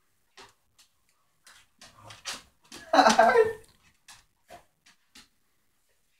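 Two dogs play-fighting on a wooden floor: scattered short clicks and scuffles of paws and claws, with a louder burst of dog growling about three seconds in.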